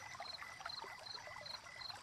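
Faint night-time swamp ambience: a high chirp repeats evenly about three times a second over a soft trickle of water.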